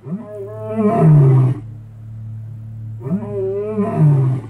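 Lion roaring: two long calls about three seconds apart, each rising and then sliding down in pitch, the first the louder, over a steady low hum.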